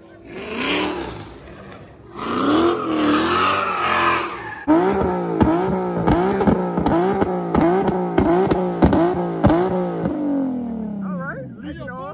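A car engine revving hard, then blipped in quick repeated rises and falls about twice a second, before the revs wind down near the end.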